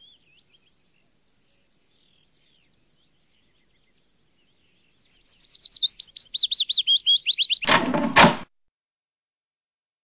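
A songbird chirping, faintly at first and then in a rapid run of high repeated chirps for a few seconds. The chirping is followed near the end by a short loud noise lasting under a second.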